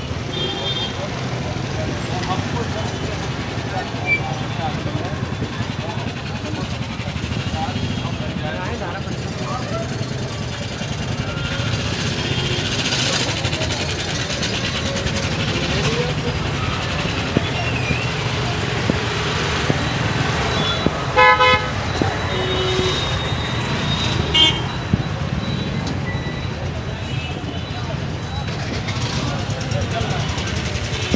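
Busy city street traffic: a steady din of vehicles and people's voices, with vehicle horns honking now and then. The loudest is a short horn blast about two-thirds of the way through.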